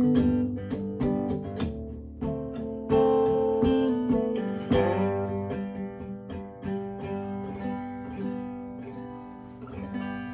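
Solo acoustic guitar playing the closing instrumental of the song: picked notes and strums about twice a second at first, then thinning out and getting quieter, with a last chord struck near the end and left ringing.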